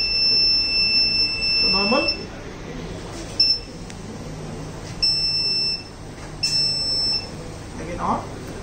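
Electronic buzzer of an eye-blink drowsiness alarm sounding a steady high beep for about two seconds, then three shorter beeps of the same pitch. This is the alert that the eyelids have stayed closed for two seconds or more.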